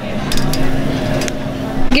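Busy restaurant background din: crowd chatter and room noise, with a few sharp clicks.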